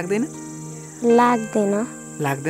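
Crickets chirping in a steady high-pitched drone under a short spoken phrase about a second in.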